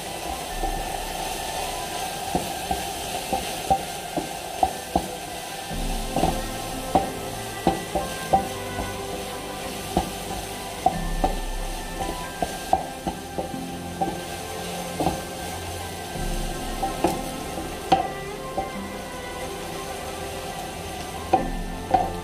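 Wooden spatula stirring diced chicken and onions in a frying pan over the flame, the food sizzling, with frequent sharp taps and scrapes of the spatula against the pan.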